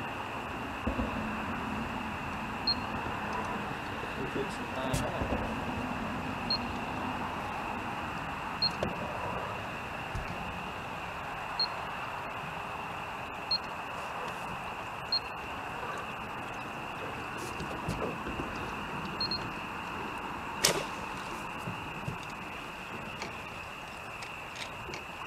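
Steady night-time background on a bowfishing boat: an even drone with a constant high whine, faint short high chirps every couple of seconds, and one sharp knock near the end.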